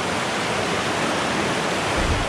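River water rushing over rocks in a steady, even wash of noise.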